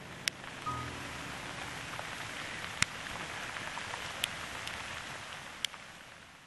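Small ice pellets falling on a gravel trail: a steady hiss with a few sharp ticks where single pellets strike close by. It fades near the end.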